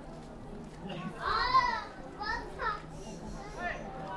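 Distant high-pitched shouted voices: one long call about a second in, then a few short shouts, over faint open-air background noise.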